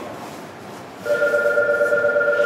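An electronic station departure bell starts ringing about a second in: a loud, steady ring on fixed pitches with a fast trill.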